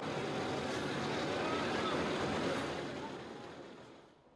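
Military convoy of armoured trucks and pickup trucks on the move: engines running under a steady noisy rush of road and wind noise. The sound fades out over the last second.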